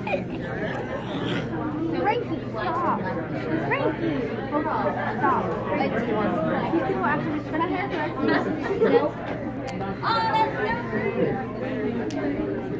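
Indistinct chatter of several people talking at once in a large room, with no single voice standing out.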